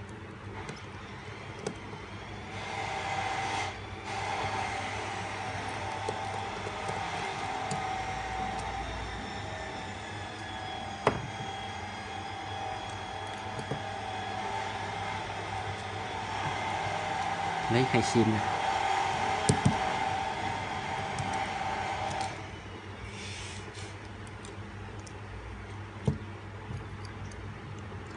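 A steady mechanical whirr with a hum in it, from a running motor, starts a couple of seconds in and cuts off about six seconds before the end.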